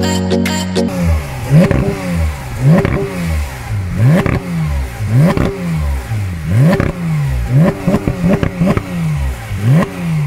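Porsche 911 GT3 RS (991.2) 4.0-litre naturally aspirated flat-six revved repeatedly at standstill: a series of sharp throttle blips about once a second. Each blip snaps the revs up quickly and lets them fall back.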